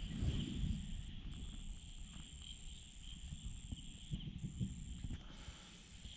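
A high, steady insect trill that breaks off briefly a few times, with soft rustling and handling in the grass, loudest in the first second and again about four to five seconds in.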